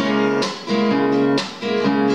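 Nylon-string classical guitar strummed in chords, an instrumental passage between sung lines, with two brief dips between groups of strokes.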